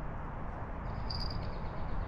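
Outdoor lakeside background noise, a steady low rush, with one short high-pitched chirp lasting about half a second, about a second in.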